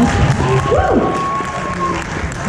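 Audience applauding and cheering in a hall, over a held tone and a tone sliding steeply downward about a second in, from an amplified instrument.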